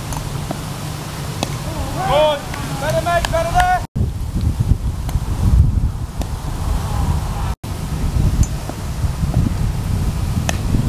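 Wind buffeting the camera microphone as a steady low rumble, with players' voices calling out on the field between about two and four seconds in. The sound drops out for an instant twice, where clips are joined.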